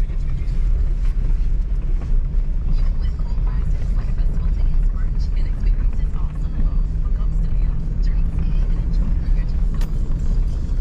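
Toyota truck running at low speed on a bumpy dirt track, heard from inside the cab: a steady low engine and road rumble with scattered knocks and rattles from the rough surface.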